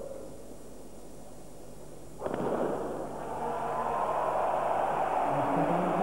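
A hush, then a single starting-pistol shot about two seconds in. The stadium crowd's cheering rises and builds after it.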